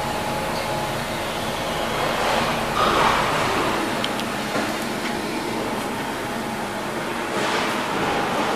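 An engine running steadily, swelling briefly about two and a half seconds in and again near the end.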